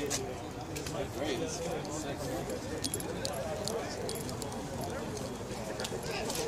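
Indistinct background chatter of people talking, with scattered short clicks and footsteps on pavement.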